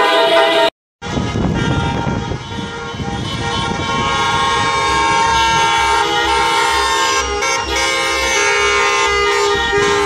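Many car horns honking at once in a celebratory car parade, a dense mix of overlapping steady horn tones of different pitches. The sound cuts out completely for a moment about a second in.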